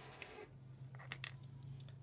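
Quiet handling of a pen: a few faint clicks and ticks as it is picked up and moved, over a low steady hum.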